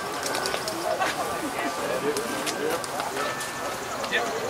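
Indistinct voices of people chatting, with scattered light clicks.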